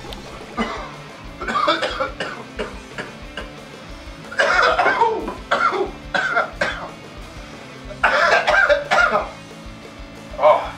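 A man coughing in about four harsh fits after inhaling a dab from a glass bong, over background music.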